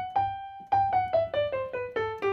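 Piano playing a G major scale as single notes, about five a second. It reaches the top G just after the start, holds it for about half a second, then steps back down one note at a time.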